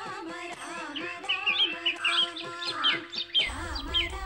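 Indian film background music with long held melodic tones, with quick bird chirps over it from about a second in. A low rumble comes in near the end.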